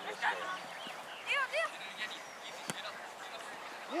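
Distant shouts from players across the soccer field, a few short high-pitched calls in the middle, with one sharp knock a little past halfway.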